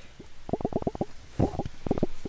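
Low, irregular crackling rumble of microphone handling noise as the hand-held camera moves and brushes among the pepper plants, in two short spells.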